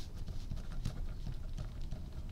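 Pen writing on a pad of graph paper: a quick, irregular run of nib taps and scratches as the words are written.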